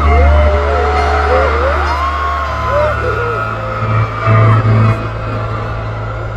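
Live keyboard music: deep, sustained bass notes, with the bass shifting to a new note about halfway through, under a long, gliding sung melody.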